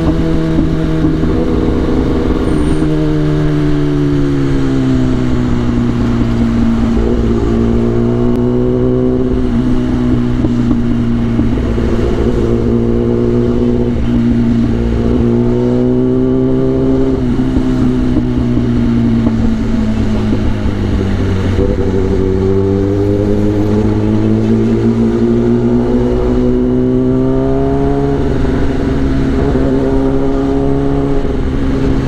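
Kawasaki ZX-10R's inline four-cylinder engine running at low revs in traffic, its pitch slowly falling and rising several times as the throttle is eased on and off, with a steady rush of wind noise.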